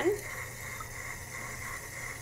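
Kitchen tap running a steady stream of water into a glass mason jar of mung beans, refilling it to rinse the beans.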